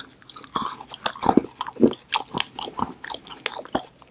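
Close-miked chewing of a mouthful bitten from a blue edible 'soap bar', a chocolate made to look like a Dove soap bar: many short, irregular moist clicks and crackles.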